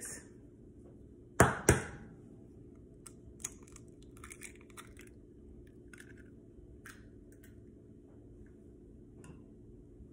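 An egg being cracked on a stainless steel mixing bowl: two sharp knocks in quick succession about a second and a half in, then faint small clicks as the shell is pulled apart and emptied.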